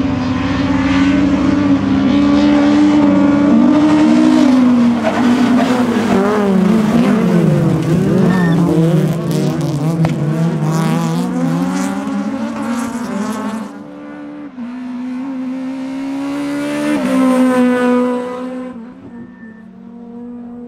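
Several STC-1600 class rallycross cars racing close together, their engines revving up and down with overlapping, crossing engine notes. The sound drops about two-thirds of the way in, one car's engine rises again, and it fades away near the end.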